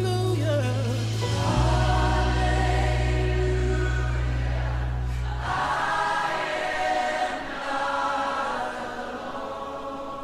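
Gospel choir singing slow, held chords over low sustained bass notes. The bass drops out about halfway through and the voices carry on alone, slowly getting softer.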